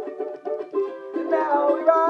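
Ten-string charango strummed in a steady rhythm of chords.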